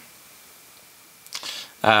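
A pause in talk: faint steady hiss, then a few short soft clicks about a second and a half in, and a voice starting near the end.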